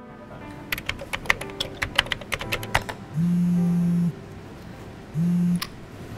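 Computer keyboard typing in quick clicks for about two seconds. Then a phone rings twice with a steady low buzzing tone, first a buzz of about a second, then a shorter one, and these are the loudest sounds.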